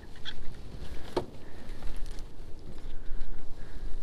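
Wind rumbling and buffeting on the microphone, with a couple of brief, sharp, higher sounds near the start and about a second in.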